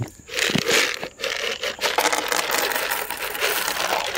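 Dried field corn kernels poured from a plastic cup onto a wooden feeder platform, a continuous dense rattle of many small hard kernels that starts just after the beginning.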